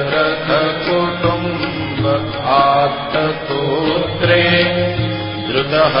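Devotional Hindu hymn music: a melodic line that bends in pitch, heard over a steady low drone.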